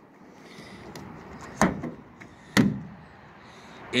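Two sharp knocks about a second apart, each with a brief ring after it, on a pickup truck's body.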